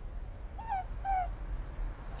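Night-time ambience sound effect: crickets chirping in short high pulses, with two short falling calls from an animal about a second in.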